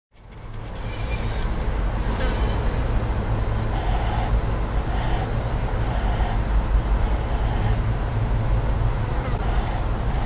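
Outdoor ambience fading in over the first second: a steady low rumble of distant road traffic, with a steady high hiss above it.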